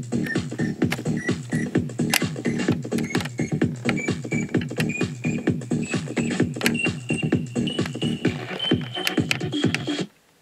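Electronic dance music with a steady beat and a synth line climbing step by step, played from cassette on a Quasar GX3632 boombox fitted with replacement 4-ohm speakers.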